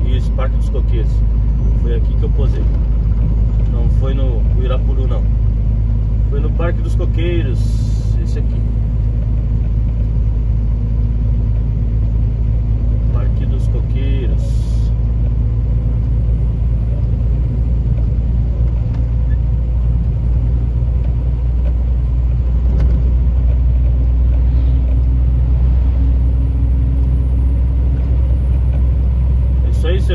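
Heard from inside a truck cab on the move, the diesel engine keeps up a steady low drone over road noise. Two brief high hisses come about 8 and 14 seconds in.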